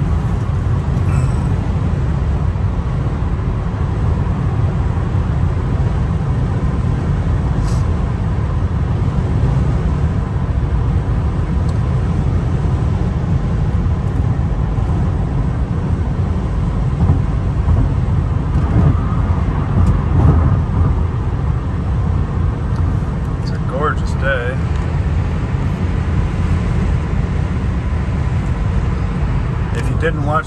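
Steady road and wind noise inside the cabin of a 2001 Nissan Maxima GLE cruising on the freeway at about 75–80 mph: a constant low rumble of tyres and engine with wind noise, at an even level throughout.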